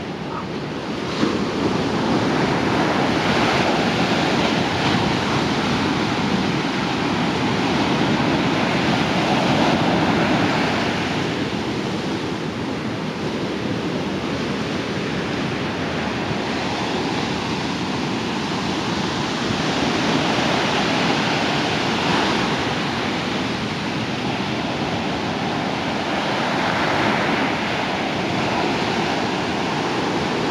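Ocean surf: small waves breaking and washing up the shore, the rush swelling and easing every few seconds as each wave comes in.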